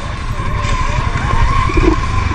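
ATV engine running steadily at low speed down a rough dirt trail, with a thin steady whine above a dense low rumble.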